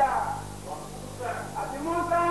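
A voice speaking in short phrases, over a steady low electrical hum.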